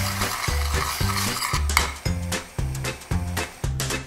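Metal spoon stirring sugar and cocoa into water in a stainless steel saucepan, with a scraping sound against the pan, over background music with a steady beat.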